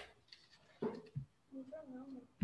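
Faint sounds over a video call: a short knock about a second in, then a drawn-out, wordless child's voice near the end.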